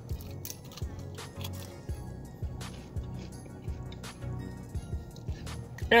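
Background music with a steady beat, playing quietly.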